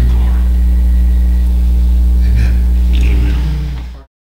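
Steady electrical mains hum from the church sound system, a loud low tone with fainter higher overtones, with a few faint murmurs over it; it fades out in the last half second.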